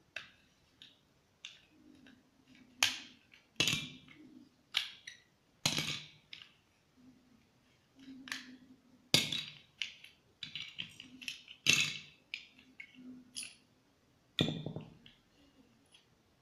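Plastic pieces of a cheap Rubik's cube clicking and snapping as it is prised apart by hand, in irregular sharp clicks with about half a dozen louder snaps, and small pieces knocking on the table.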